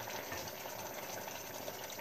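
Steady simmering of an onion, pepper and white-wine sauce cooking in a pot on the stove.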